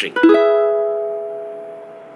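Ukulele strummed once on an E major chord, voiced with the index finger barring the fourth fret and the pinky on the seventh fret of the first string. The chord rings out and slowly fades.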